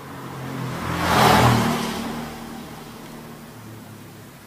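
A motor vehicle passing by, its engine sound swelling to a peak about a second in and fading away over the next two seconds.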